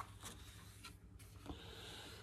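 Faint paper rustle of a hardback picture book's page being turned, with a small click at the start, then near-silent room tone with a soft tick about one and a half seconds in.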